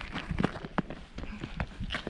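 Footsteps crunching on a wet gravel path, a quick, irregular series of steps over a faint background hiss.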